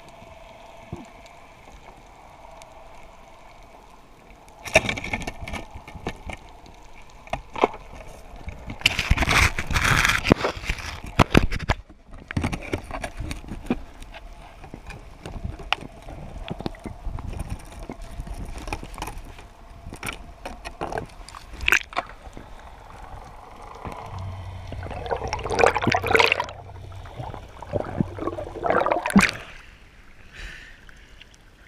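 Underwater sound picked up by an action camera in its housing during a free dive: a faint steady tone and hiss, then scattered clicks and crackles with loud gurgling, bubbling bursts, the loudest about nine to twelve seconds in and again near the end as the camera breaks the surface.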